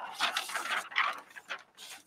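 Paper pattern pieces rustling and crinkling as they are picked up and handled, in a few irregular bursts that fade out near the end.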